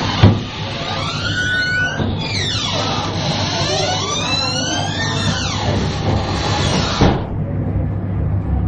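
A siren wailing, its pitch sweeping up and down twice, over a steady hum and background noise. A sharp thump comes just after the start and another near the end, where the noise drops away.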